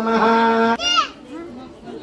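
A voice chanting a Sanskrit mantra holds one long steady note that stops about three quarters of a second in. A short high squeal falling in pitch follows, then a crowd chatters, with children's voices among it.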